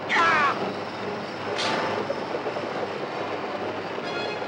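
Horse-drawn covered wagon rolling at a gallop: a steady rumble of wheels and hooves. A loud high cry falls in pitch in the first half second, and a sharp crack sounds about one and a half seconds in.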